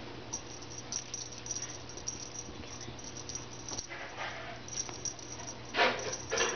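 Kittens playing on carpet: soft scuffling and scattered light clicks, with a short, louder sound just before the end.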